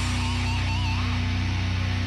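Rock theme music for a TV show's opening, led by electric guitar, its lead notes wavering in pitch over steady sustained low notes.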